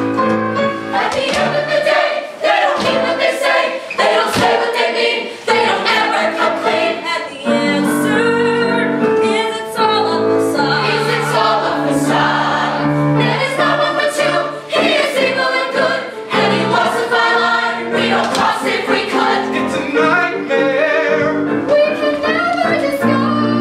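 A vocal ensemble singing a musical-theatre number live, several voices in harmony over sustained chords.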